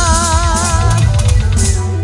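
Live cumbia band ending a song: the female singer holds a final note with vibrato until about a second in, then the drum kit plays a closing fill with cymbal crashes over a low held bass note.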